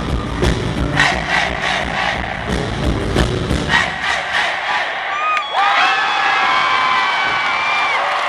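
Rock band with electric guitar and drum kit playing the final bars of a song live, with sharp drum hits; the music stops about four seconds in. The audience then cheers, with high screams and whoops rising over the crowd noise.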